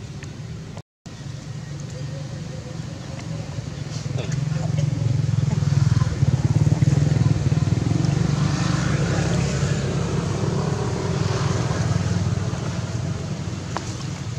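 Low rumble of a passing motor vehicle. It builds from about four seconds in, is loudest around the middle, then slowly fades. The sound drops out briefly about a second in.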